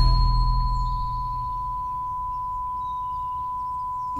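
A steady, high-pitched electronic beep held on one unchanging pitch, a film sound effect; under it a deep rumble fades away over the first second and a half.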